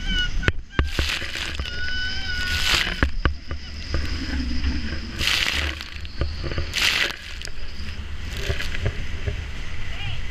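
Wind rumbling on the microphone of a powerboat running hard through rough, choppy seas. Several sharp knocks come in the first few seconds, and loud hissing bursts of spray follow about two and a half, five and seven seconds in, as the bow slams into the waves.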